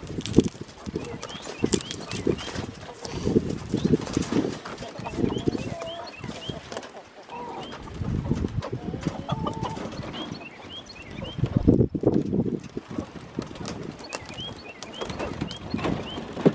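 A wooden-framed, metal-clad chicken tractor being dragged on its wheels through deep mulch, knocking and rattling in uneven bursts. Chickens inside cluck, and short high chirps come through now and then.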